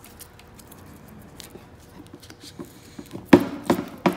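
Handling noise of brass air-hose fittings being threaded on by hand: soft rustles and small ticks, then a few sharp clicks of metal a little after three seconds in.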